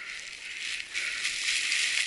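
Dry fallen leaves crunching and rustling under mountain bike tyres rolling through a thick leaf cover, a steady crackly rustle that grows a little louder about a second in.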